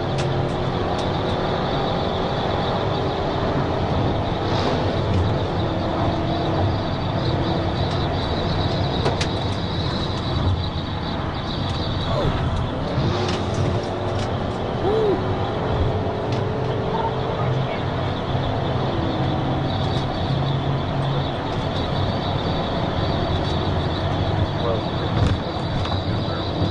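Steady engine, tyre and wind noise inside a police cruiser running at over 100 mph, keeping an even level throughout.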